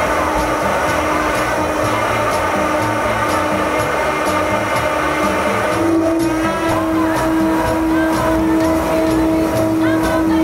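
A soul song with a steady beat plays over the steady drone of the Mitsubishi MU-2's twin turboprop engines; about six seconds in the engine drone grows louder and a little higher as power comes up for takeoff, and a woman's singing comes through in the second half.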